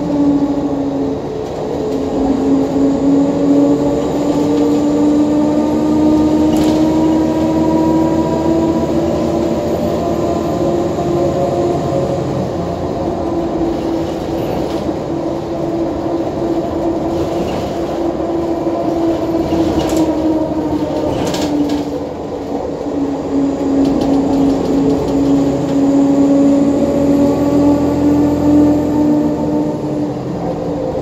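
Cabin sound of a 2014 NovaBus LFS hybrid bus under way: a steady whine from its Allison EP40 hybrid drive over the Cummins ISL9 diesel's rumble, the pitch slowly falling and rising again as the bus changes speed. A couple of sharp rattles come a little past two-thirds through.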